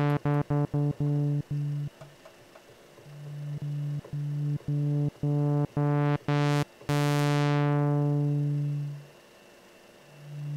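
A sawtooth oscillator through a Synthesizers.com transistor ladder filter (Q150) with the resonance off, playing one low note. The note is retriggered in short repeated pulses and also held. Its tone brightens and darkens as the filter cutoff is turned by hand: it is brightest just before a long held note, which then grows duller as the cutoff closes and fades out about nine seconds in.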